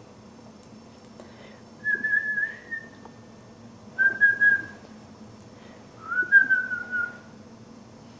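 A person whistling three separate clear notes, each about half a second to a second long, at a similar high pitch; the last rises, then sags slightly. The whistles call the dog.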